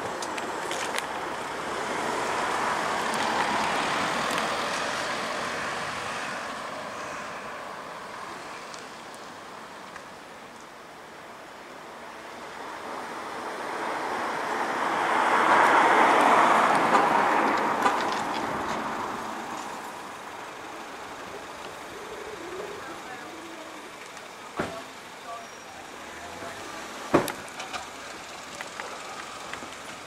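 Road traffic: a vehicle passes about three seconds in and a louder one about sixteen seconds in, each rising and fading over several seconds. A few sharp clicks follow near the end.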